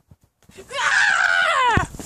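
A person screaming loudly, starting about three quarters of a second in, held for about a second and falling in pitch as it breaks off near the end.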